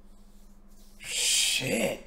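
About a second in, a man gives a short breathy vocal exclamation without words: a rush of breath that turns into a brief hooting voice. A faint steady hum lies under it.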